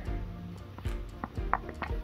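Soft background music, with a pen writing on a paper sheet: a few short scratches and taps about a second in and toward the end.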